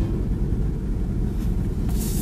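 Steady low rumble of room background noise, with no voices or music.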